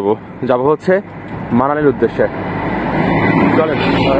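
A road vehicle approaching along the road, its engine and tyre noise building steadily through the second half, heard under a man's voice.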